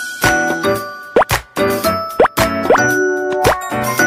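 Cheerful jingle music with plinking notes and a light beat, with quick rising pop sound effects about once a second.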